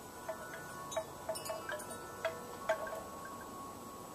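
Chimes ringing, with irregularly spaced struck notes at several pitches and tones that linger between strikes.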